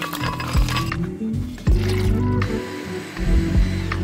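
Background music over a few sharp clicks and clinks from a blender jar and its lid being handled.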